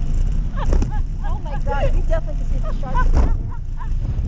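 Women laughing and exclaiming in short, rising-and-falling bursts over a steady low rumble.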